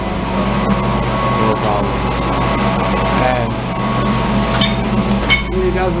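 Steady droning hum of mechanical-room equipment, with a couple of sharp clicks near the end.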